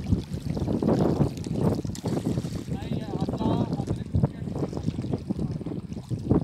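Wind rumbling on the microphone over small waves lapping at a pebble shore, with people's voices in the background; one voice rises about halfway through.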